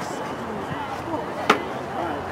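A single sharp crack of a field hockey stick striking the ball, about one and a half seconds in, over distant players' voices.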